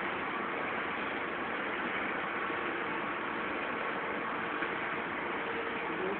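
Steady machine hum and hiss of an automatic cookie production line running, with a few faint steady tones in it.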